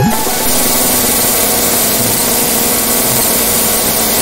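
Loud, steady hiss-like noise that cuts in abruptly in place of the music, with the music only faintly audible beneath it.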